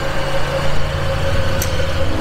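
2020 Hyundai Santa Fe's engine idling steadily, just started remotely from the phone app.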